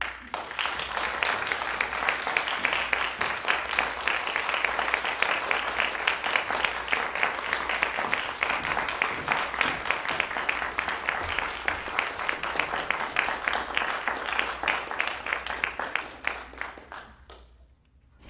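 Audience applauding: dense clapping that starts right after the final piano chord, then thins to a few scattered claps and stops near the end.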